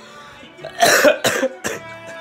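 A man's loud, breathy vocal bursts, three or four in quick succession about a second in, over quiet background music.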